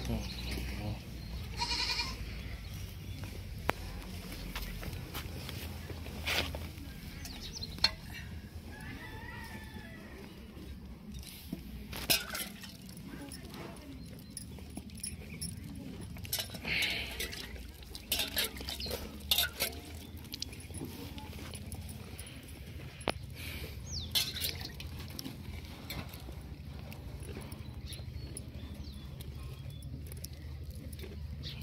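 A goat being milked by hand: short squirts of milk hitting a steel pot now and then, with goats bleating briefly here and there.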